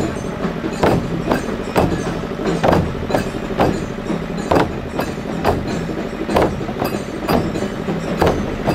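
A group of large frame drums beaten with sticks in a steady rhythm, a strong stroke about once a second with lighter strokes between.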